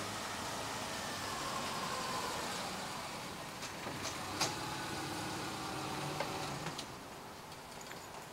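A car's engine running as it pulls up and idles, then switched off about a second before the end, with a few sharp clicks along the way.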